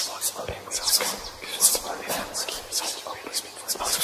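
A person whispering breathily, with sharp hissing sounds several times a second.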